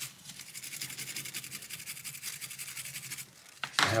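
Toothbrush bristles scrubbing quickly back and forth over a graphics card's GPU die to loosen crusty old thermal paste, a fast, even scratching that stops about three seconds in.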